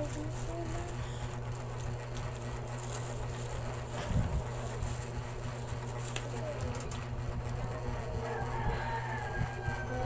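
Plastic bags crinkling and small packages being handled, with scattered light clicks, over a steady low hum.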